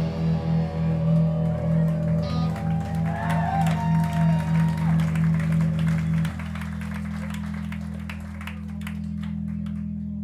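Electric guitar and bass chord left ringing and droning through the amplifiers at the end of a rock song, pulsing about two to three times a second, then holding as a steady hum about six seconds in. Audience clapping and cheering over it.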